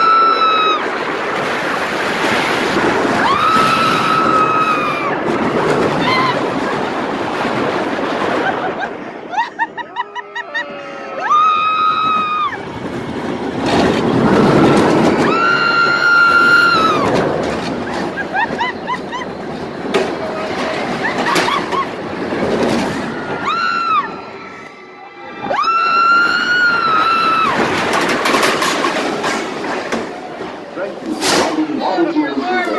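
Riders screaming again and again, high held screams about a second long each, over the rushing wind and rumble of a flywheel-launched shuttle loop roller coaster train as it launches, runs through the loop and returns.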